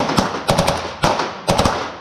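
Fully automatic gunfire in short bursts of a few rounds each, echoing inside an indoor shooting-range booth.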